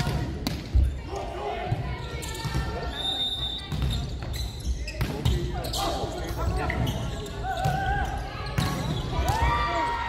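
Volleyball rally on an indoor court: a string of sharp smacks as the ball is struck by hand in the serve, passes and sets, the loudest about a second in, with a spike near the end, under players' shouts and calls.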